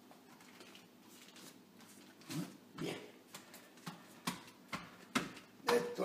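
Faint handling noises of a puff pastry sheet and its baking paper being laid and smoothed on a countertop: a string of short rustles and taps in the second half.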